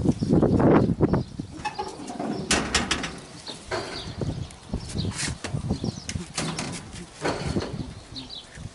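Irregular knocks, clatter and rustling from hands working on metal parts in a combine harvester's engine bay, with a louder noisy stretch in the first second.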